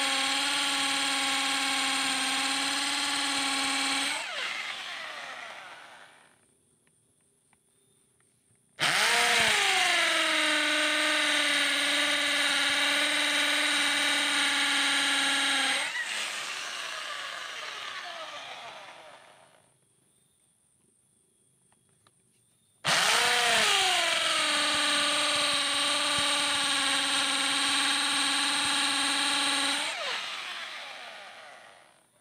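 Corded electric drill with a hole saw boring into a wooden strip, a steady high whine under load. Twice it is switched off and winds down to a few seconds' quiet, then starts again with its pitch swooping up and settling as the saw bites into the wood.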